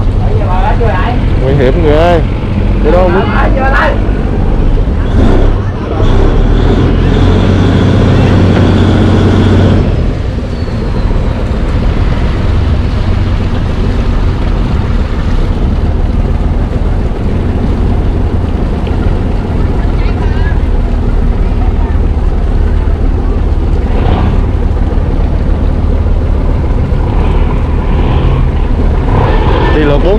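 Boat engine running with a steady low drone, louder for a few seconds and then dropping back about ten seconds in.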